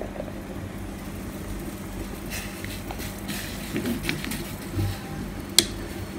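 Faint scraping of a plastic spoon in a plastic container of salt, with a single sharp tap near the end, over a steady low hum.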